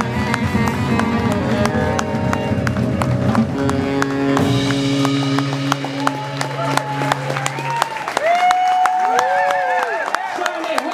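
Live jazz band of alto saxophone, double bass, drums and piano playing the close of a tune: full band with drums for the first few seconds, then settling onto a long held chord about halfway, followed by long sustained melodic notes near the end.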